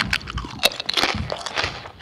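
Potato chips being bitten and chewed close to a microphone: a quick, irregular run of sharp crunches.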